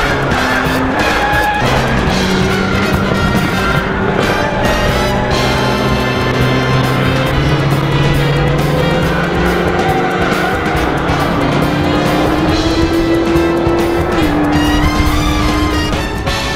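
Instrumental soundtrack music mixed with a car engine running hard on a race track. Near the end the engine's pitch climbs, then drops suddenly as if on a gearshift.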